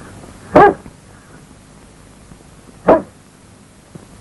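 A dog barking twice, two short barks a little over two seconds apart, over a faint steady hiss.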